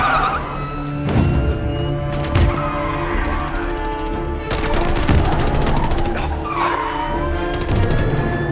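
Orchestral action score with held notes, cut through by several bursts of rapid automatic gunfire. Tyres squeal briefly near the end.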